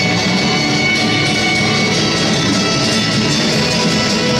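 Music for a skating routine, playing steadily.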